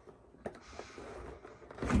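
Hands handling a cardboard board-game box: a light knock about half a second in, then faint scuffing of cardboard under the fingers.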